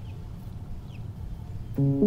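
Low, steady outdoor rumble with a few faint bird chirps. Near the end, a plucked-string chord starts the music, its notes ringing on.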